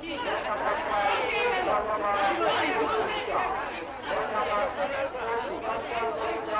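Crowd chatter: many voices talking over one another at once, steady throughout, with no single speaker standing out.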